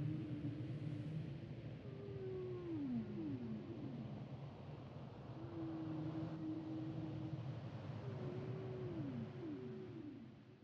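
Humpback whale song: a long held tone, then three quick downward-sliding calls, the phrase heard twice, over a low steady rumble.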